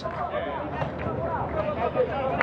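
Indistinct voices of players and spectators shouting and cheering just after a goal is scored, several voices overlapping with no one clear speaker.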